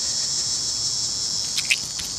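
Steady high-pitched insect chorus droning without a break. Near the end come a few brief scrapes, a plastic scratcher rubbing the coating off a scratch-off lottery ticket.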